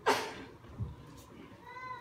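Short, high-pitched vocal sounds, like a small child's: a sharp one at the start and a brief rising-and-falling one near the end.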